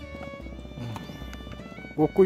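Soft background music made of sustained, held tones.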